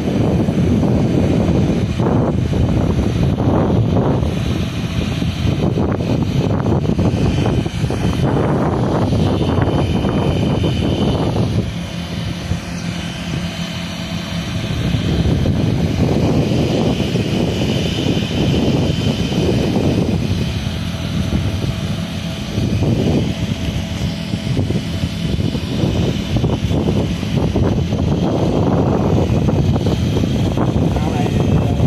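Rows of paddlewheel aerators in shrimp ponds running, a continuous mechanical drone with water churning. The sound swells and dips irregularly and eases off for a few seconds a little before halfway.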